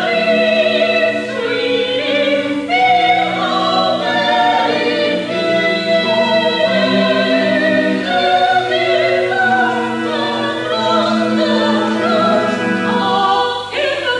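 Several women singing together in a stage-musical song, holding notes that change every second or so.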